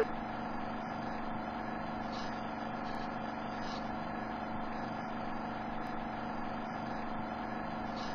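A steady mechanical hum made of several held tones, unchanging in level and pitch.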